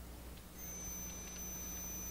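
Faint steady low hum, with a thin, steady high-pitched whine that comes in about half a second in.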